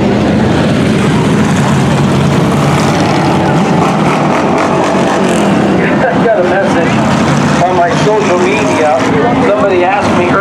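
Dirt-track hobby stock race cars' engines running steadily as one car passes close and a line of cars rolls by, with a voice talking over them from about six seconds in.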